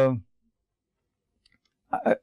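A man lecturing holds a drawn-out "the", then pauses for about a second and a half of near silence broken only by a faint click. He starts speaking again just before the end.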